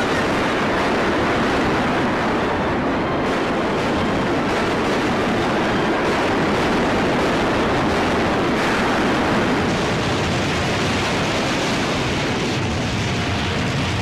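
Steady, loud roar of a massed artillery and rocket-launcher barrage, the firing running together into one continuous rumble with no separate shots standing out.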